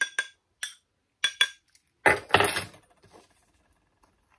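A metal spoon clinks several times against a small glass bowl, tapping off lemon zest into the sugar, with short ringing clinks in the first second and a half. About two seconds in comes a longer, rougher scrape as the spoon works through the sugar.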